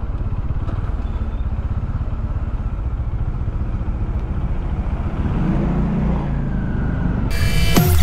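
Bajaj Dominar 400's single-cylinder engine running steadily at highway cruising speed, heard from on the bike. Near the end, music cuts in abruptly.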